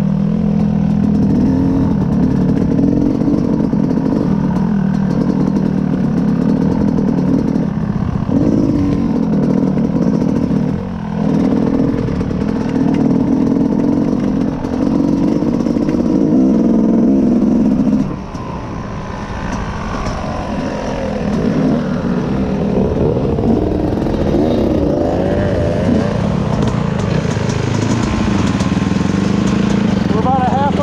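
Dirt bike engine running under changing throttle as it rides a trail, with short drops in loudness about eight and eleven seconds in and a longer ease-off about eighteen seconds in before it picks up again.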